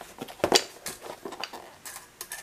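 Irregular light clinks and knocks of metal on metal, about half a dozen, from a hand shifting and turning a cast-iron hand English wheel (fender rolling tool) against a steel tape measure.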